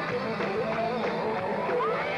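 Live rock concert sound: sustained electric guitar notes that waver and bend, with one bend rising near the end, over crowd voices.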